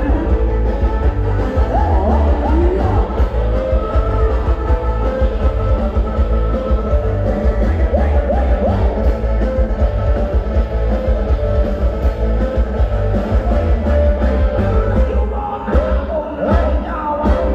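Live Thai dance band playing loud, upbeat ramwong-style dance music with a heavy, steady beat and strong bass, with a voice singing over it.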